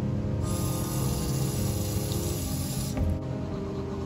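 Bathroom sink tap running as a toothbrush is held under the stream. The water starts about half a second in and is cut off suddenly about three seconds in, with background music throughout.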